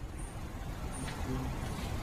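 Quiet room tone of a lecture hall during a pause in speech: a steady low hum and faint hiss, with a few faint, short high-pitched tones about once a second.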